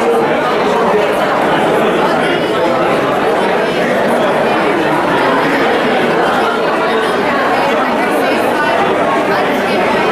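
Speech with crowd chatter: several people talking at once, a woman answering the press among them.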